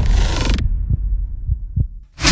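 Intro-template soundtrack: a loud full-range music hit cuts off about half a second in, leaving a deep bass rumble with three short, low thumps.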